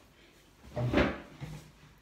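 A person sitting down at a table: a chair scraping and knocking, loudest about a second in, with a smaller knock shortly after.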